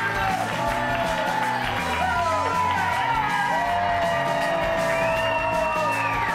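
A talk show's opening theme music playing loudly and steadily, with a studio audience cheering and whooping over it.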